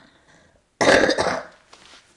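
A single loud cough from an elderly woman about a second in: one abrupt burst that fades within about half a second.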